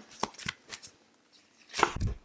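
Tarot cards being handled by hand: several light card clicks, a short lull, then a sharper card snap near the end as a card is pulled from the deck.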